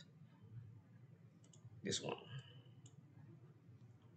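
Faint computer mouse clicks: a quick double click, then two single clicks about half a second apart.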